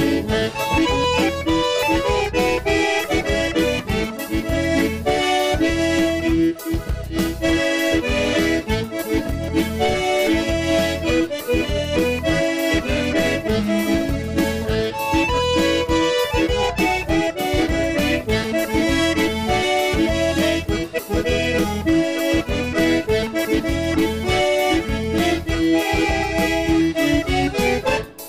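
Lively instrumental band music led by a piano accordion, with an electronic keyboard and a regular percussion beat; the tune stops at the very end.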